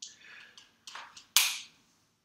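A few light clicks, then one sharp snap about one and a half seconds in, which is the loudest sound: handling noise from the lecturer's hands and marker.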